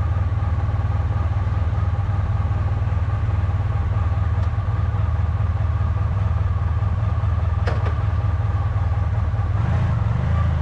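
Motorcycle engine idling steadily at a standstill, with a single sharp click about three-quarters of the way through. The engine note shifts just before the end.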